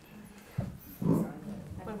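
Brief voiced sounds from people in the lecture hall after a short lull, then speech starting near the end.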